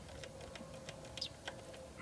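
Hand ratchet clicking in light, irregular ticks as a socket on a long extension backs out a small 8-millimeter bolt, over a faint steady hum.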